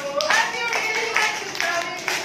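A class of young children and their teacher clapping their hands together in time, about two claps a second, under voices singing a children's action song.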